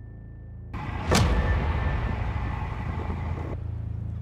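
Wind and road noise on a camera mounted on a road bike riding at speed on asphalt, with one sharp knock about a second in; the noise cuts off abruptly near the end.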